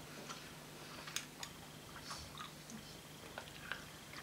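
A person chewing fruit sweets with her mouth shut, smacking lightly: faint, scattered clicks and smacks.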